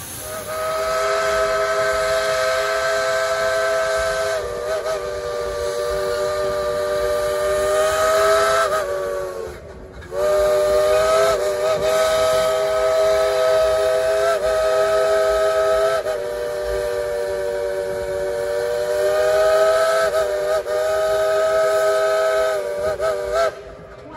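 Steam whistle of a 1938 Baldwin 2-8-2 narrow-gauge steam locomotive, sounding several notes at once in two long blasts. The first lasts about nine seconds and sags in pitch as it ends; after a short break about ten seconds in, the second holds nearly to the end.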